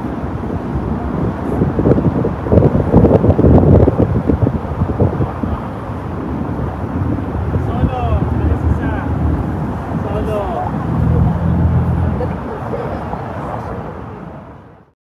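Busy city street ambience: passers-by talking over a steady wash of traffic. It is louder and rougher about two to four seconds in, and a vehicle engine hum stands out briefly near the end.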